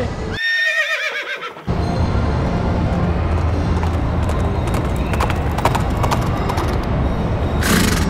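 A horse whinny sound effect, over a second long, near the start; the background cuts out beneath it. After it, carousel music and ride noise run on, with a patch of sharp clicks like clip-clop hoofbeats in the middle.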